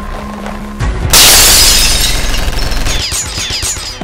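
Film-score music with a loud, sudden blast-like sound effect about a second in that fades away over about three seconds.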